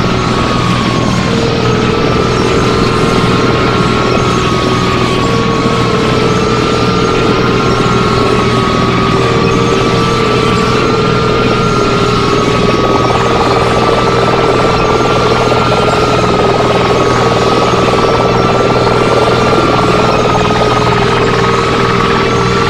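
Harsh electronic noise music: a loud, unbroken wall of noise over a steady low hum, with a looping pair of tones that step back and forth between two pitches every second or two.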